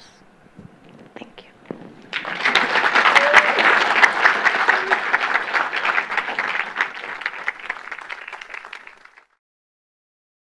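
Audience applauding at the close of a talk. The applause starts about two seconds in, rises quickly, then dies away and cuts off abruptly shortly before the end.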